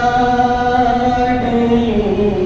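A male voice chanting soz, the elegiac recitation of a Shia majlis, into a microphone. He holds one long, steady note that breaks off near the end.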